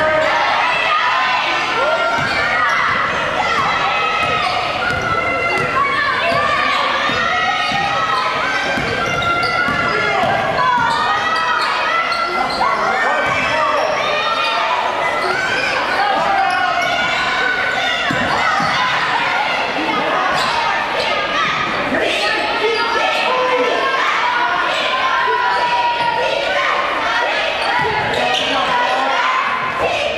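A basketball being dribbled on a hardwood gym floor during play, the bounces echoing in a large hall over a steady mix of players' and spectators' voices.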